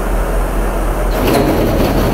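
Bourgault 7000 air seeder's hydraulic metering circuit running with a steady hum; about a second in, the tank meters switched on by the master start turning and a louder mechanical running noise rises.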